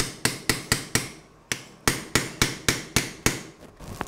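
Surgical mallet striking a metal impactor, driving a cementless knee-prosthesis component into the bone during a total knee replacement: about four sharp, ringing metal strikes a second, a short pause about a second in, then a second run of strikes.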